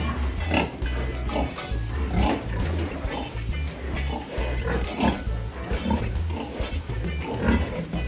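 Piglets grunting in many short, overlapping calls, over music with a steady, stepping bass line.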